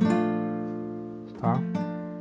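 A B7 chord strummed once on a nylon-string classical guitar, its notes ringing and slowly fading away.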